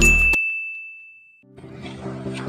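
A single bright, high ding, a sparkle sound effect, rings out and fades over about a second and a half as the electronic intro music cuts off. Faint background music comes in near the end.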